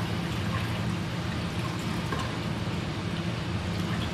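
Tap water running steadily from a rubber hose on a lab sink tap into a stainless-steel sink, rinsing crystal violet stain off the slides of a Gram stain.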